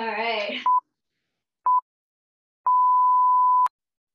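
Workout interval timer beeping a countdown at one steady pitch: two short beeps a second apart, then a long beep of about a second, signalling the end of an interval. A brief voice sounds just before the first beep.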